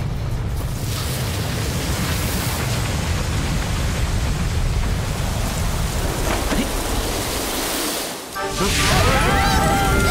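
Sound effect of a strong rushing wind: the ice monster's breath blasting out as a steady gale. It drops briefly about eight seconds in, then comes back with wavering tones over it.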